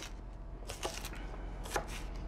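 Chef's knife chopping vegetables on a plastic cutting board: a few separate, irregularly spaced knocks of the blade striking the board.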